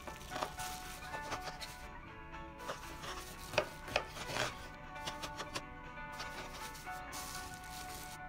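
Kitchen knife chopping squeezed kimchi on a wooden cutting board: irregular knocks of the blade through the cabbage onto the wood, the loudest few near the middle, with faint background music.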